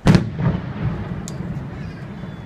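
An aerial firework shell bursting with one loud boom, followed by a rumbling echo that fades over the next two seconds.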